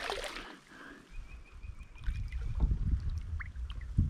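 A hooked largemouth bass splashing at the surface during the first half second, then quieter water sounds and low bumps as it is drawn alongside the kayak.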